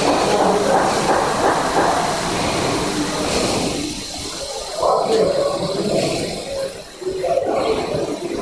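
A steady rushing hiss, with faint indistinct voices underneath that come and go.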